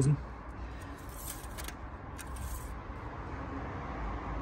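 Faint scraping of a Toyota Avensis D-4D's metal oil dipstick sliding down into its guide tube and back out, twice about a second apart, over a steady low outdoor rumble. The rod rubs against the inside of the tube, which is what smears extra oil onto one side of the dipstick.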